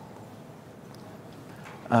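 Faint, even room hiss with no distinct event, then a man's voice saying 'um' near the end.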